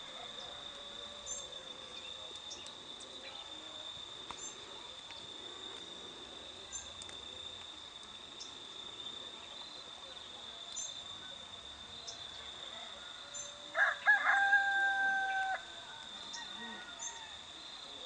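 A rooster crows once, about fourteen seconds in: a short broken start, then a long held note. Under it runs a steady high-pitched insect drone, with faint short chirps about every second and a half.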